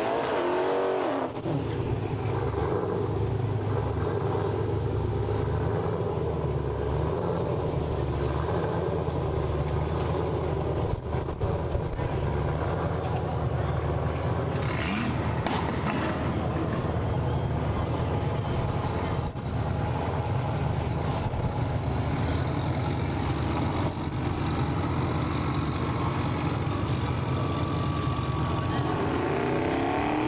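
A drag car's engine running at a steady low idle as it creeps up to and sits at the start line after its burnout. The revving and tyre noise of the burnout die away about a second in.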